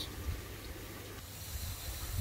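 Steady low outdoor noise with wind rumbling on the microphone and a faint hiss; a low band of noise thins out about halfway through.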